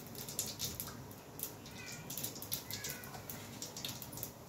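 Cumin seeds and asafoetida crackling in hot oil in a pressure cooker on a gas stove, a quick run of sharp pops throughout. Two short high-pitched calls come through faintly, about two and three seconds in.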